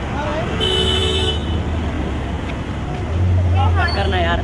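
A car horn sounds once, a short two-tone blast lasting under a second, over a steady low engine rumble. Voices call out near the end.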